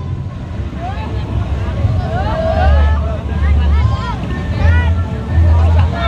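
Deep bass from a horeg sound-system rig's speakers, coming in uneven heavy pulses, under a crowd's shouting voices.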